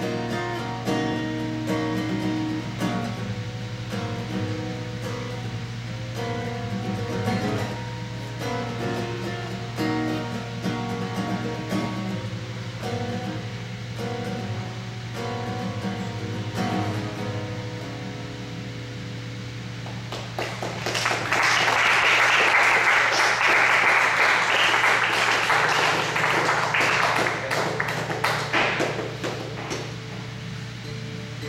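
Acoustic guitar playing a finger-picked passage that winds down and stops about eighteen seconds in. A few seconds later the audience applauds for about eight seconds, louder than the guitar, fading near the end.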